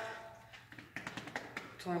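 A quick run of light taps lasting about a second, between spoken words.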